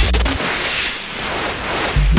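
Glitch electronic track at a breakdown: the kick drum and bass drop out about half a second in, leaving a noisy whooshing swell sampled from snowboarding footage that thins in the middle and builds again near the end.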